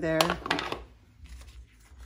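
A sharp click and a few lighter clacks as a marker is put down on the craft table, then faint rustling as the paper card is handled.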